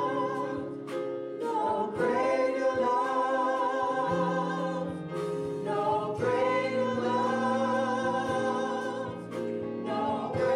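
Gospel worship singing: a small group of singers on microphones singing together in long held notes, with short breaks between phrases about every four seconds.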